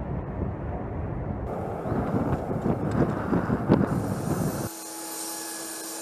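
Low, steady rumble of a C-5 Galaxy's four turbofan engines as the plane passes overhead. A little past three-quarters of the way through, the rumble cuts off suddenly, leaving a quieter, steady high whine.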